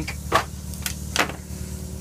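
A small electric motor humming steadily, with a few sharp knocks about half a second, one second and a second and a quarter in.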